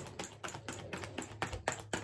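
A deck of tarot cards being shuffled by hand: quick, irregular clicks and slaps of cards against each other, several a second.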